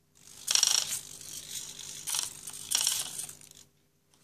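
MobBob biped robot's blue micro servos whirring with a high whine while the robot moves through a command, with three louder bursts: about half a second in, around two seconds and near three seconds. The plastic feet clatter on the mat. It stops just before the end.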